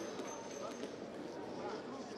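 Arena crowd ambience: a steady murmur of spectators' voices, with a faint thin high tone through the first second.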